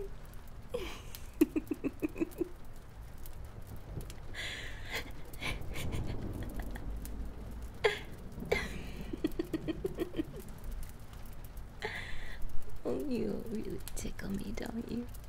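A woman giggling while being tickled with a feather: short runs of quick, breathy laughs about a second in and again around nine seconds, with sharp breaths between them. A longer, louder giggle that rises and falls in pitch comes near the end.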